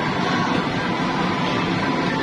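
A blower or fan running: a steady rushing whir with a faint high whine held throughout.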